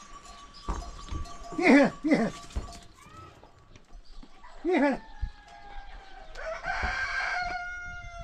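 Rooster crowing: one long, drawn-out crow begins about five seconds in and tails off, falling in pitch. A few short, sharp animal calls come earlier.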